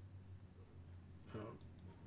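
Near silence over a low steady hum, with a couple of faint computer mouse clicks and a brief faint murmur a little past halfway.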